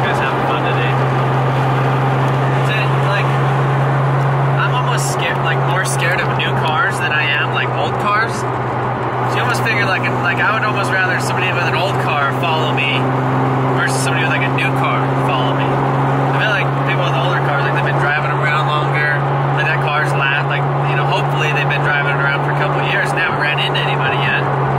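Steady in-cabin drone of a single-turbo 2JZ-GTE inline-six in a MkIV Toyota Supra cruising at constant highway speed, a low even hum mixed with road noise.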